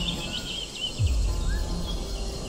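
Birds chirping in a rapid run of high notes that ends about half a second in, then a single short rising call, over a low steady rumble. A deep falling boom comes about a second in.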